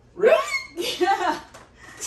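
A person's voice: two short vocal bursts, each curving up and down in pitch, the first starting about a quarter second in and the second just after the half-way point.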